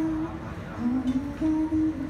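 A woman singing a slow melody of held notes into a handheld microphone, live in a small room.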